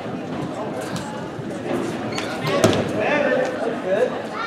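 Indistinct voices of people around a wrestling mat, with one sharp thump about two and a half seconds in.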